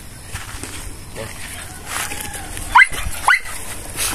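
A dog gives two short, high barks about half a second apart near the end, each rising in pitch. It is a baying bark, the kind a dog uses to hold game at bay.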